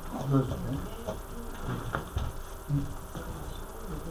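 Low, murmured voices in a small meeting room, with a few light clicks about halfway through, over a faint steady buzz.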